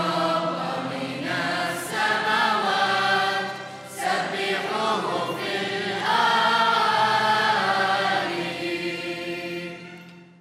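Mixed choir of children and teenagers singing a hymn, with violin and keyboard accompaniment under it; the singing fades out near the end.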